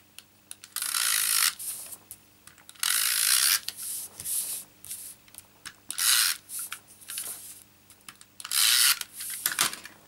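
Hands rubbing patterned paper flat onto cardstock, four separate strokes a couple of seconds apart, each a dry papery rub lasting about half a second to a second.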